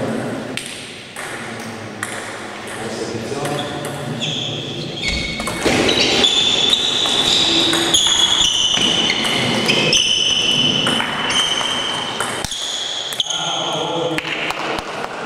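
Table tennis rally: the ball clicking off the bats and the table in quick alternation, sparse at first, then coming fast from about five seconds in until near the end.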